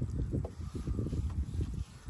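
Low, irregular rumble of wind buffeting the microphone, rising and falling in gusts.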